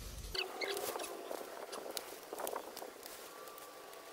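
Leaves and twigs of a dense shrub rustling and crackling in irregular bursts as someone pushes into it, with a few faint high chirps about half a second in. A low wind rumble cuts off abruptly just after the start.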